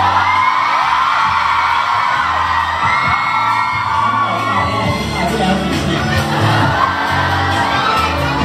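Live Thai pop song through a PA: a backing track with a male singer on a handheld microphone, over a crowd of fans cheering and shrieking.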